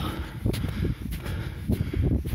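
Footsteps trudging through deep snow, with heavy breathing from the effort of the climb.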